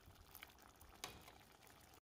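Very faint bubbling of thick tomato thokku simmering in a pan, with one soft pop about a second in.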